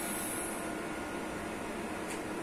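Steady background noise of a lab room: an even, unchanging hiss with a faint thin high tone, and no distinct sounds.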